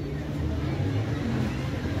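Electric wheat flour mill (atta chakki) running with a steady low hum and rumble.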